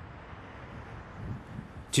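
Steady outdoor background noise with a low rumble that swells briefly in the second half.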